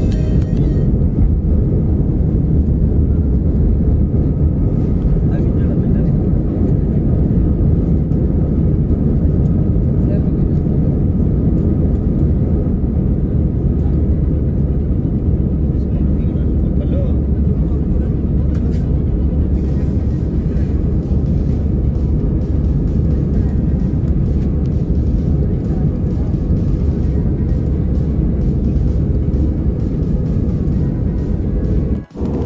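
Jet airliner cabin noise during the climb after takeoff: a steady, loud, low roar of the engines and airflow heard from inside the cabin.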